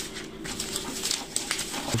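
Sheets of printed copy paper being handled on a table, with soft scattered rustles, over a low steady hum that partly drops away about halfway through.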